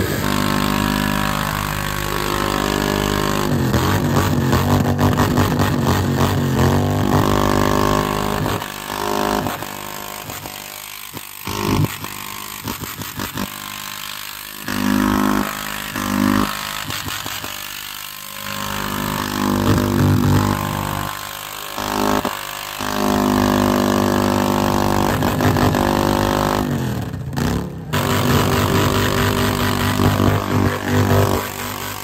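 Motorcycle burnout: the engine revving hard with the rear tyre spinning against the ground. The throttle is held high for the first several seconds, then rolled off and back on in repeated surges, with one clear drop and climb in pitch near the end.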